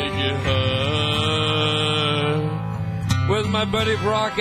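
A man singing into a microphone over a karaoke backing track with guitar. There is one long held note, then shorter sung notes near the end.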